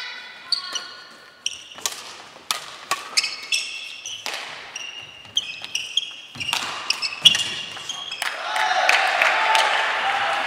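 Badminton rally in a gym: sharp smacks of rackets hitting the shuttlecock, several a second, mixed with short squeaks of court shoes on the wooden floor. About eight seconds in the rally ends and many voices rise together in shouts.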